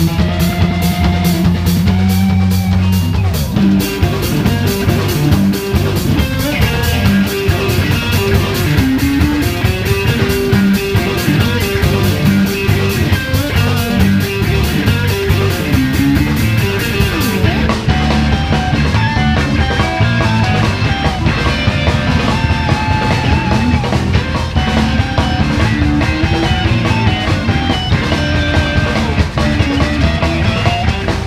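Live rock band with electric guitars, electric bass and a drum kit, playing loudly. A chord is held for about the first three seconds, then the full band drives into a steady rock groove.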